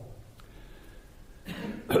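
A quiet pause with low room tone, then a man briefly clears his throat near the end.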